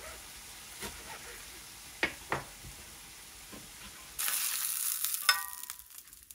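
Food sizzling in a frying pan under a few sharp knife strokes through lettuce on a wooden cutting board; about four seconds in, the sizzle of pork neck frying gets louder and metal tongs clink once against the pan.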